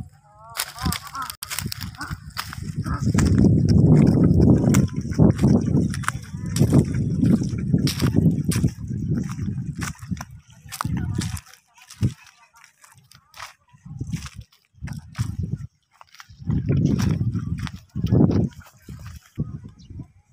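Footsteps on a dirt path with low, irregular rumbling noise on the microphone, heaviest through the first half and coming in spells later. A child's voice is heard briefly about a second in.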